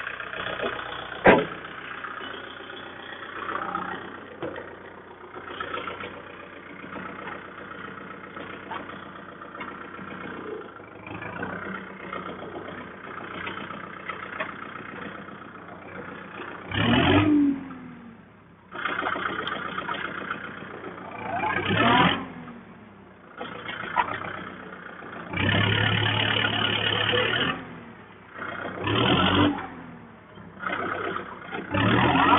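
Kubota MU4501 tractor's four-cylinder diesel engine idling steadily, with one sharp bang about a second in as the bonnet is shut. In the second half the engine is revved up in several short surges, the longest and loudest near the end.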